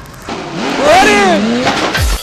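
A person's voice crying out without clear words, its pitch rising and then falling.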